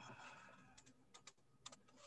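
Near silence, with a few faint, short clicks of a computer keyboard being typed on in the second half.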